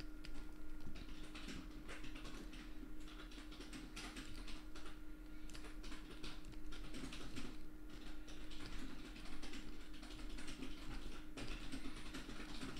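Computer keyboard keys tapped in scattered, irregular light clicks, fairly quiet, over a faint steady hum.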